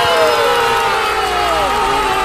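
Crowd cheering and whooping as the New Year countdown reaches zero, with several long whoops falling in pitch over one another.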